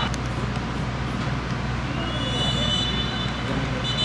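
Football match ambience from the stadium: a steady wash of crowd and player voices over a low hum. About halfway in a high, steady whistle-like tone comes in and holds.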